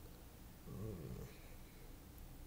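A brief low murmur from a man's voice, with a wavering pitch, about half a second to a second in, over faint room tone.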